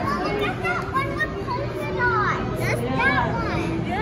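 Children's voices: high-pitched exclamations and chatter, busiest from about two seconds in, over a background murmur of other visitors.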